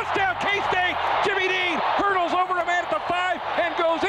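Excited play-by-play commentary from a male announcer calling a long touchdown run, over crowd noise.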